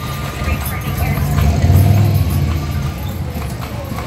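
Hooves of a carriage mule clip-clopping on a paved street. A low motor-vehicle rumble swells up and fades about two seconds in, the loudest thing heard. Voices can be heard faintly among the street sounds.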